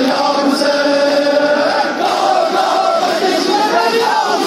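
Large crowd of men chanting a noha (Shia mourning lament) together, many voices holding and bending long sung lines over one another.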